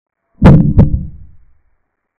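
Sound effect of two heavy, booming thumps about a third of a second apart, dying away within about a second, marking a queen capture in an animated chess game.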